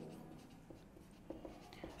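Faint scratching and a few light taps of a marker writing on a whiteboard.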